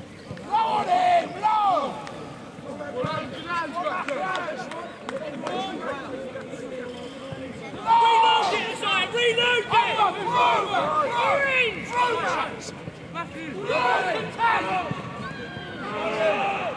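Several voices shouting across a rugby pitch, players and touchline calling out in bursts during play. The loudest shouts come about a second in and again about eight seconds in.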